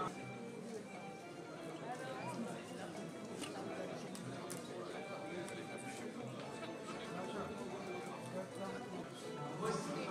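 Many guests talking at once, a general hum of conversation with no single voice standing out, over faint background music.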